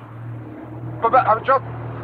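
Land Rover Series engine idling with a steady low hum.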